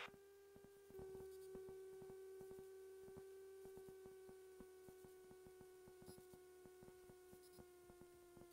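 Near silence: a faint steady hum with a few overtones, sinking slightly in pitch, with faint regular ticking.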